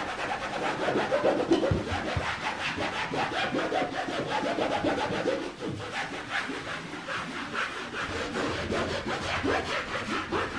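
A wall being scrubbed by hand with a cleaning cloth, a rhythmic rubbing in quick, even back-and-forth strokes with a brief pause about halfway.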